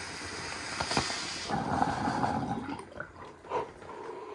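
Water in a glass bong bubbling and gurgling as a long hit is drawn through it, fading out near the end.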